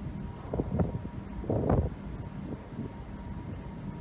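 Wind buffeting the microphone on the deck of a moving ship, over a steady low rumble of the ship and the sea rushing past the hull. The wind gusts louder twice, just under a second in and again near two seconds in.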